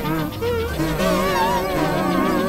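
Dense layered electronic music: many sustained synthesizer tones at different pitches, each warbling rapidly up and down with a buzzing quality. The texture thins out briefly just after the start, then fills back in about a second in.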